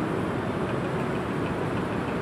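Steady background noise with no voice: an even hiss with a low rumble underneath.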